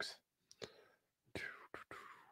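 A quiet pause with a few faint clicks and a soft, breathy exhale close to the microphone, fading out near the end.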